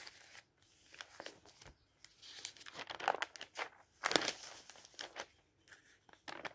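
Pages of thin glossy supermarket advertising folders being turned and handled: irregular papery rustling and crinkling, with a sharp snap right at the start and the loudest rustle about four seconds in.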